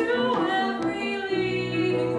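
A female soprano singing a musical-theatre aria live, with piano accompaniment; a new piano chord comes in partway through.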